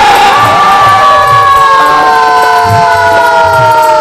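A devotional chant sung through a microphone: the singer holds one long note that slowly sinks in pitch, over low drum beats. There is a burst of crowd noise at the start.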